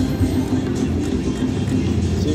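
Griffin's Throne video slot machine playing its reel-spin music and sound effects while the reels spin, over a steady low background rumble.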